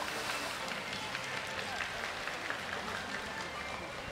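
Orca splashing in the show pool, a steady watery wash with faint voices of the crowd underneath.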